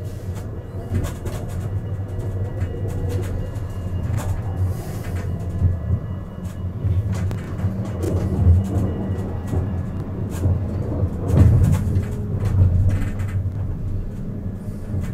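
Siemens Avenio low-floor tram running along its track, heard from the driver's cab: a steady low rumble of wheels on rails with scattered clicks and rattles, and louder knocks about eight and eleven seconds in.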